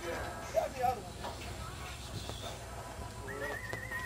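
A horse whinnying near the end: one wavering high call that holds, then falls away, over background voices.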